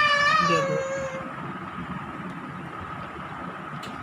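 A loud, high-pitched wavering cry that fades out about a second in, over a faint steady high whine.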